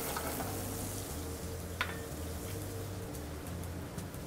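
Large shrimp frying in a hot sauté pan on a gas range: a steady sizzle, with a low steady hum underneath. One short click of metal a little under two seconds in.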